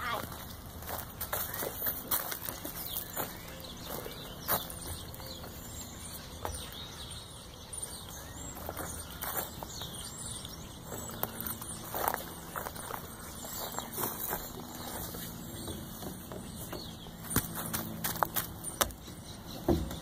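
Footsteps crunching on wood-chip mulch and scattered knocks on a metal play structure, with sharper knocks near the end, over faint voices.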